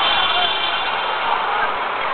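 Busy city street: indistinct crowd voices over steady traffic noise, with a brief high-pitched tone near the start.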